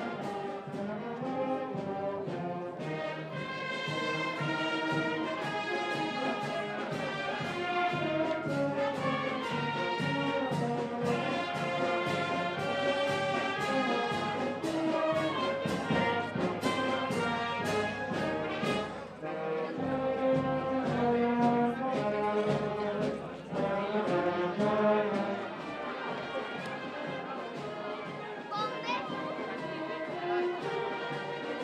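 Brass band playing a piece of processional music, several brass parts sounding a melody over steady beats.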